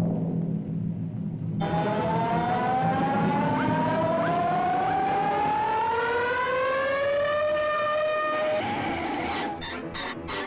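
Cartoon soundtrack sound effect: a low rumble, then a long siren-like tone that rises slowly in pitch for about seven seconds before cutting off. It is followed near the end by quick pulsing music.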